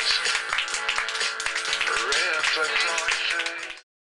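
Audience clapping at the end of a live song, dense sharp claps with sustained, wavering pitched sounds over them; it cuts off abruptly near the end.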